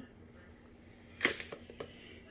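A sharp knock a little over a second in, then a few lighter clicks, as a dish of brown sugar is tipped against a plastic mixing bowl and a silicone spatula scrapes the sugar in. A faint steady hum runs underneath.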